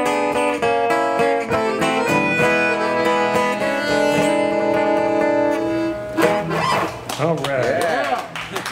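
Acoustic guitar strummed with a piano accordion holding long sustained chords; the playing thins out about six seconds in.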